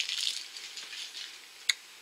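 Crinkly plastic wrapper rustling and fading away over the first half second, then a single small click near the end.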